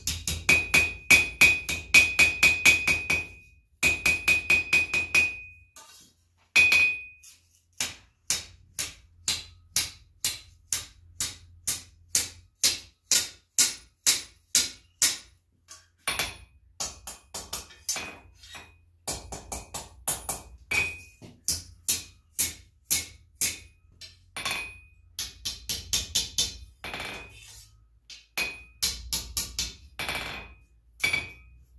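Hand hammer forging hot steel on an anvil: runs of quick blows, about three to four a second, broken by short pauses, with many blows ringing high off the anvil.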